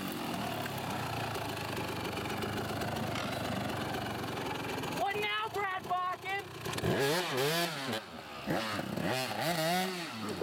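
Dirt bike engine running steadily, then revved in several rising-and-falling blips over the second half.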